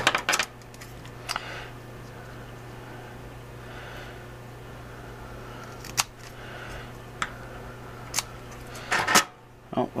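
Scattered sharp clicks and taps from small hand tools and a metal atomizer being handled over a wooden table, with a cluster of them shortly before the end, over a steady low hum.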